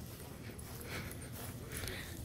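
Faint outdoor background: soft, irregular footsteps and rustles on grass over a steady low rumble, with a slightly sharper tick near the end.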